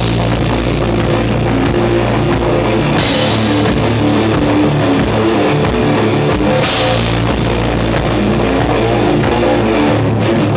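Live heavy rock band playing: a drum kit with a cymbal crash at the start, another about three seconds in and another about six and a half seconds in, over electric guitar holding sustained chords.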